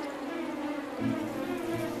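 Buzzing sound effect imitating a bumblebee: a steady low drone that steps down to a lower pitch about a second in.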